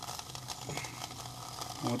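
Aluminium soda-can alcohol stove burning acetone nail polish remover, giving a steady sizzling hiss with fine crackle as its side jets come alight once the stove has preheated. A low steady hum runs underneath.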